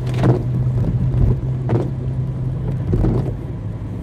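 Car engine hum and road noise heard from inside the cabin while driving on a rain-soaked street, with a swish from the windshield wipers about every second and a half.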